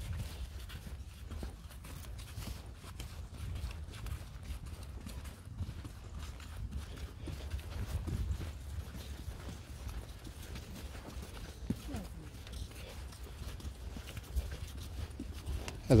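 Several horses walking on a soft, muddy sand track: a loose patter of hoofbeats, heard from the saddle of one of them, over a low steady rumble.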